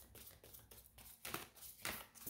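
Faint taps and light rustles of tarot cards being handled and laid down, a few soft clicks over quiet room tone, the clearest about a second in and near the end.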